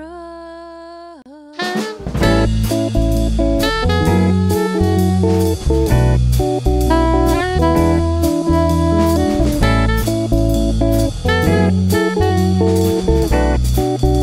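Instrumental music: a lone held note wavers and bends downward as one song ends, then about two seconds in a band track starts, with a drum kit keeping a steady beat over a bass line.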